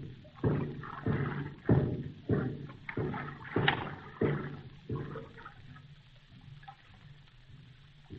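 Radio-drama sound effect of water splashing: a regular series of about eight splashes, roughly one every 0.6 seconds, dying away after about five seconds. These are people hauling someone out of a river.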